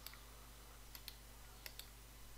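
Faint computer mouse clicks over a low steady hum: one click, then two quick pairs, one about a second in and one near the end, as a sketch line is placed point by point in CAD software.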